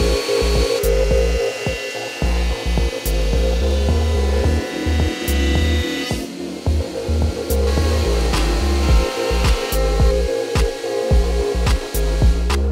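Scheppach jointer-planer running, its cutterhead planing a 2x4 in two passes: a longer cut of about five seconds, a short break, then a cut of about two and a half seconds. Background music with a heavy beat plays throughout.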